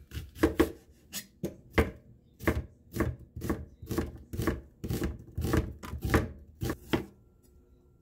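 Kitchen knife slicing an onion thinly on a plastic cutting board: a quick run of crisp cuts, each ending in a tap on the board, about three a second at the busiest, stopping about a second before the end.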